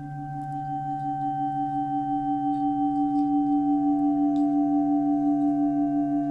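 Background drone of sustained, layered ringing tones that swells slowly with a gentle wobble; a higher tone comes in at the start and another about halfway through.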